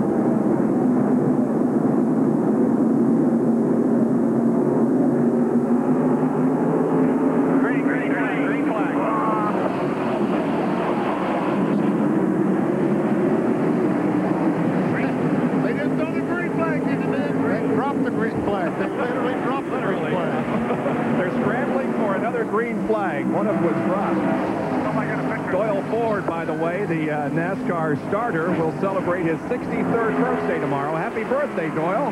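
Field of NASCAR Winston Cup stock cars' V8 engines running at speed on a restart: a loud, dense, steady drone, with car after car passing and their pitch sliding as they go by.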